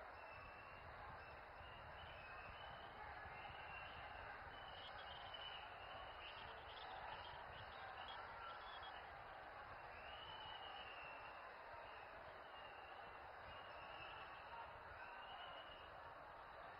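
Near silence, with only a faint steady background hiss.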